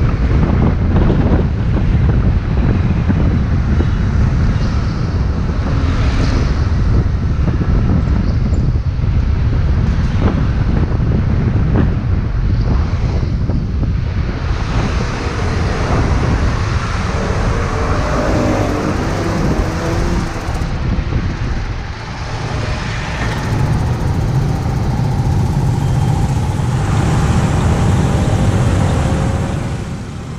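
Wind buffeting a helmet-mounted action camera's microphone on a moving scooter, a loud steady rumble mixed with the scooter's engine and surrounding city traffic. The noise drops near the end as the scooter slows to a stop at an intersection.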